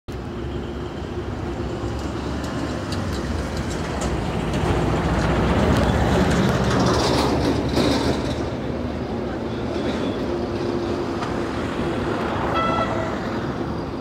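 Road traffic noise, a steady rumble that grows louder around the middle as a vehicle passes, with a short horn toot near the end.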